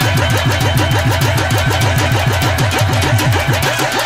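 A fast, even run of deep drum strokes in bhangra dance music, about eight a second, each stroke dropping in pitch.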